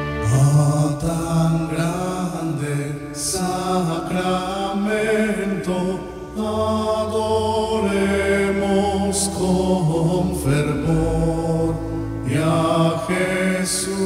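A voice singing a slow hymn to the Blessed Sacrament in long held notes, over instrumental accompaniment.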